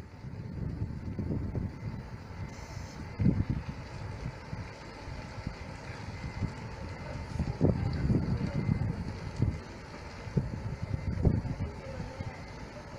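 Large tour coach's diesel engine running as the coach turns and pulls slowly across a junction, with wind buffeting the microphone in irregular gusts.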